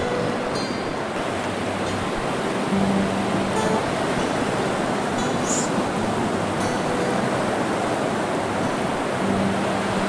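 Surf breaking and washing up the beach: a steady rush of waves.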